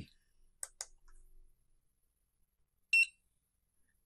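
A single mouse click, then about three seconds in one short, high-pitched beep from an RFID keycard encoder, signalling that the keycard has been encoded successfully.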